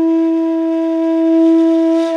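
Background music: a flute holding one long steady note.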